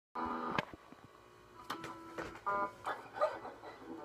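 Quiet knocks and clicks of a phone camera being handled and set in place, with a short pitched note near the start and a brief spoken word about halfway through.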